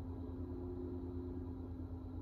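Steady low background hum with a couple of faint steady tones and light hiss: room tone, with no other sound event.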